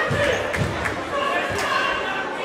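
A basketball bouncing on a hardwood gym floor, about three low thuds over the chatter of players and spectators, echoing in the gym.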